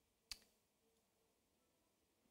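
Near silence: studio room tone, with one short click about a third of a second in.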